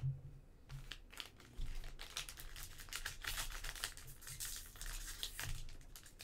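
Foil wrapper of a Panini Mosaic soccer card pack crinkling and tearing as it is opened by hand, a dense run of crackles starting about a second in.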